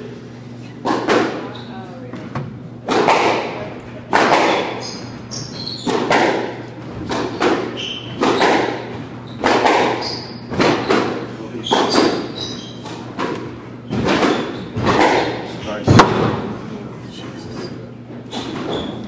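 A squash rally: the ball cracking off rackets and the court walls about once or twice a second, each hit ringing in the hall, with shoes squeaking on the hardwood floor.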